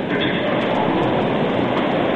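Steady rushing background noise with no distinct events: the hiss and room noise of a low-fidelity church service recording.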